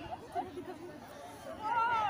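Several girls' voices chattering together, with one high voice calling out loudest near the end.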